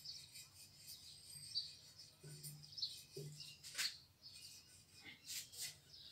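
Marker pen writing on a whiteboard, with short, faint, irregular squeaks and scratches as the letters are drawn.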